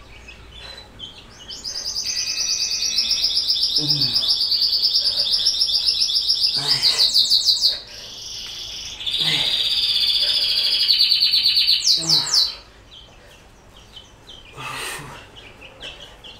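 A songbird singing in long, rapid, high trills: one stretch of about six seconds, a short break, then another of about three seconds.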